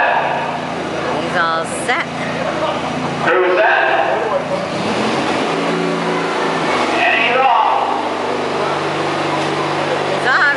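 Small garden tractor engine running under load as it tries to pull a weight sled that is too heavy for it, its note shifting about halfway through. Voices of onlookers come in now and then.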